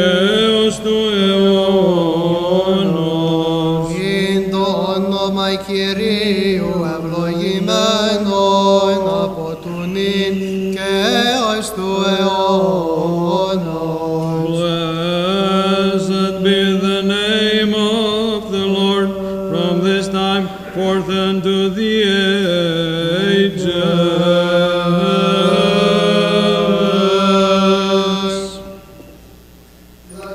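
Byzantine chant: a slow, melismatic melody sung over a held low drone (the ison), the drone stepping to a new pitch a few times.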